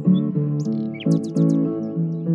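Background music of held, changing chords, with quick high bird chirps and tweets over it, thickest in the middle.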